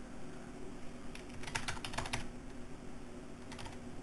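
Computer keyboard being typed on: a quick run of keystrokes about a second in, then a few more near the end, as a password is entered.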